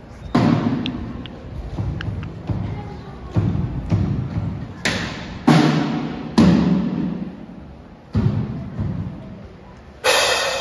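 A drum struck at uneven intervals, about nine loud hits, each echoing through a large hall as it dies away.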